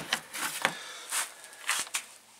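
About five short clicks and scuffs from hands handling a homemade Arduino Mega control unit and its wiring while a 9-volt battery is connected to power it up.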